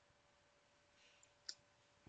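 A single computer mouse click about a second and a half in, otherwise near silence with a faint steady hum.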